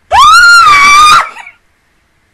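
A woman's high-pitched scream of excitement: one very loud held squeal about a second long that slides up at the start and cuts off sharply.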